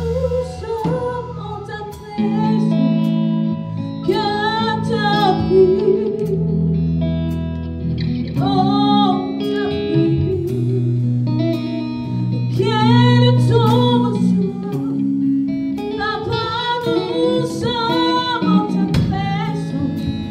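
A gospel worship song sung by women's voices with a lead singer and backing singers, in slow phrases with vibrato over guitar and long held low chords.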